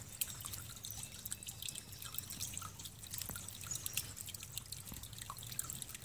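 Shallow creek water trickling over rock ledges, with many small irregular drips and plinks.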